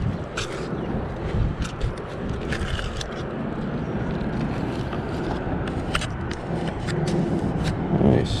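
A steady low rumble with scattered short clicks and scrapes as a magnet-fishing magnet, caked in mud and stones with rusty iron rods stuck to it, is hauled up on its rope and handled.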